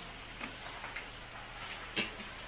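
Quiet room tone with a steady low electrical hum and a few faint, irregular ticks.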